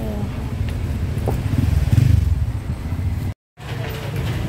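Street traffic: a low engine rumble from passing vehicles, swelling about two seconds in and breaking off for a moment near the end.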